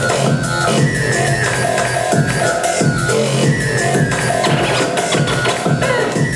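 Electronic hip-hop beat played by a DJ on Pioneer CDJ decks and mixer: heavy drums and bass with a steady, even beat.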